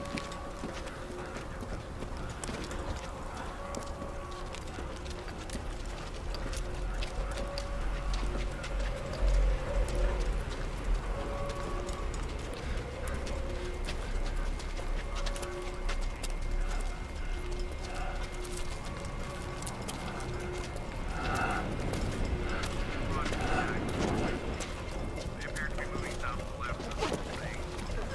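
Sci-fi short film soundtrack: a low rumble under a slow sequence of short held electronic tones, with the rumble swelling heavier about a third of the way in. Indistinct voices and louder sounds come in near the end.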